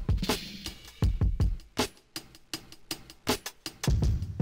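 A self-made programmed drum loop at 80 BPM playing back: deep kick-drum hits under snare and a quick, busy run of hi-hat strikes.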